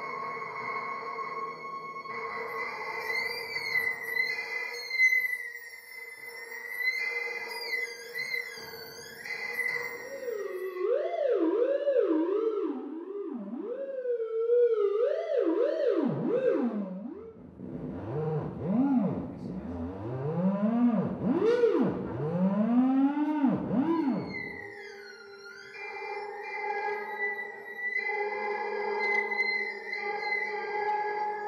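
Open Theremin giving out electronic tones: first held notes with a wavering pitch, then, from about ten seconds in, wide swoops sliding up and down roughly once a second, settling near the end into steady layered tones.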